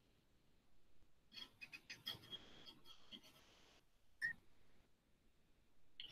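Near silence with a scatter of faint short clicks and ticks about a second or two in, and one more faint click about four seconds in.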